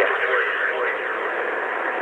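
Steady hiss of a narrow-band, telephone- or radio-like voice recording between spoken lines, with the tail of a man's word fading out at the start.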